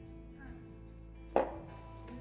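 Quiet background music with guitar; about a second and a half in, a single sharp knock with a short ring as a whisky glass is set down on the table.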